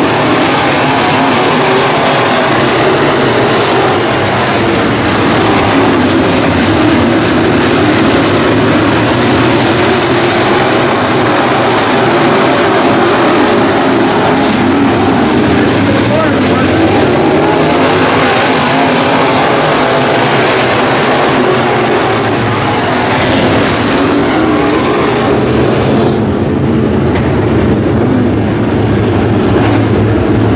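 A field of IMCA Modified dirt-track race cars with V8 engines running hard together, a loud, steady mass of engine noise. About four seconds before the end the higher-pitched part of the sound falls away as the field slows behind stopped cars.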